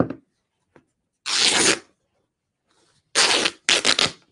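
Fabric being torn by hand into strips, three rips: one about a second in, then two shorter ones back to back near the end, after a brief click at the start.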